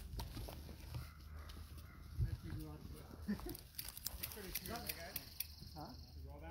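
Mountain bike rolling down a dirt forest singletrack: a steady low rumble from the tyres and wind, with irregular sharp clicks and rattles from the bike as it rides over roots and bumps.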